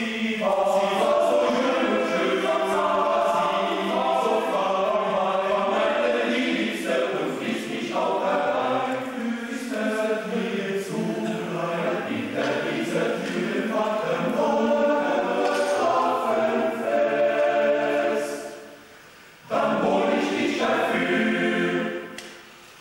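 Male-voice choir singing a cappella in several parts, with a brief pause about eighteen seconds in before the singing resumes.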